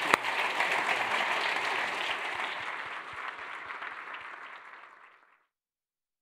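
Audience applauding, the clapping slowly fading and then cutting off abruptly about five seconds in.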